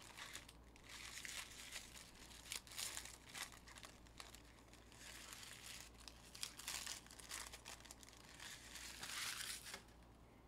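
Plastic trading-card pack wrappers crinkling and tearing as football card packs are opened and handled, with many small crackles and a louder, longer crinkle near the end that stops suddenly.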